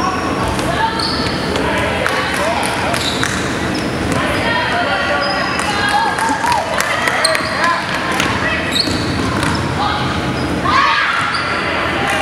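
Basketball game on a hardwood gym floor: the ball bouncing, sneakers squeaking in short high chirps, and players and onlookers calling out, all echoing in the hall.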